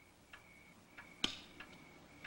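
Clock ticking steadily, a little under two ticks a second, each tick leaving a brief ringing tone. A single sharper click comes about a second and a quarter in.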